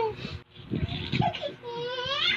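A toddler's high-pitched squeal trailing off at the start, muffled voice sounds in the middle, and another short squeal near the end: a little girl shrieking while being tickled, playful rather than distressed.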